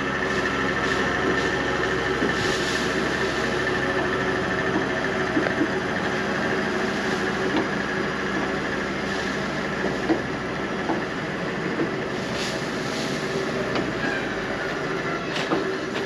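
Forage wagon unloading chopped grass silage behind a tractor: the tractor engine running steadily under the clatter and hiss of the wagon's scraper-floor chains and rollers pushing the load out of the back.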